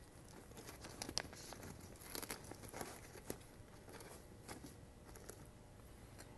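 Faint rustling and scattered light clicks as the fabric flaps of a softbox are folded closed by hand around its mount.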